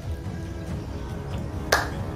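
Quiet background music, then near the end one sharp finger snap.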